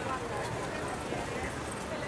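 Busy pedestrian street ambience: a crowd talking at once as people walk past, with footsteps on the paving.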